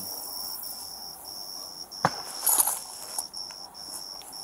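Crickets chirping in a steady high trill broken by short gaps about twice a second. A sharp click about two seconds in, followed by a brief rustle.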